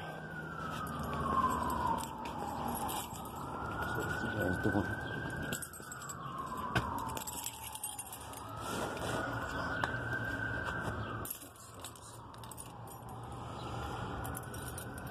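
Emergency vehicle siren wailing, its pitch slowly rising and falling about every five seconds. Keys jangle with a few sharp clicks as the door is reached.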